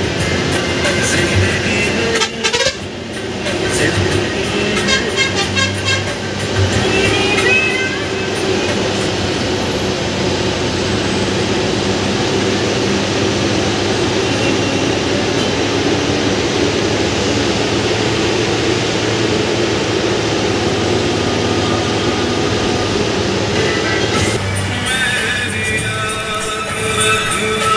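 Inside a moving bus cabin: the engine and road noise run steadily, with horn honks in the first several seconds and music playing over it.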